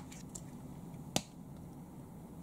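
A single short, sharp click a little over a second in, with faint small handling sounds near the start, over quiet room tone.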